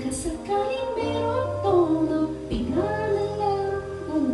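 A woman singing a slow melody into a handheld microphone, holding and bending her notes, over instrumental accompaniment with a steady bass line.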